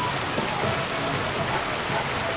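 A steady, even hiss with no distinct events, like running water or outdoor noise.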